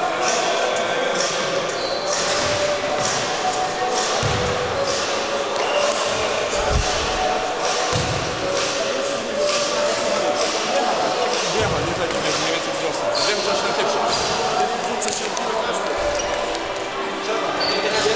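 Indistinct overlapping voices of a team huddle and spectators in a large, echoing sports hall. A few low thuds break through the chatter.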